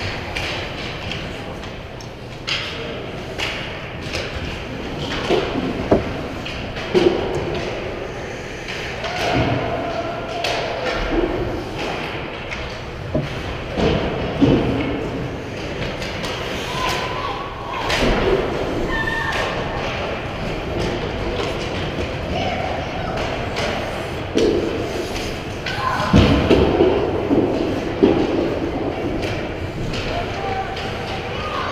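Youth ice hockey play in an indoor rink: repeated sharp knocks and thuds of sticks, puck and players against the boards and net, with voices shouting and everything echoing in the large hall.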